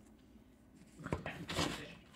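Near silence at first. From about a second in come a few soft knocks and rustles as hands work crumbled cookies and icing into dough on a plastic tray.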